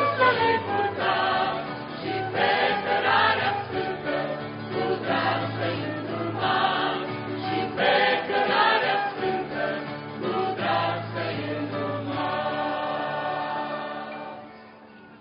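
A mixed choir of women and men singing a Romanian hymn with acoustic guitar accompaniment, closing on a long held final chord near the end.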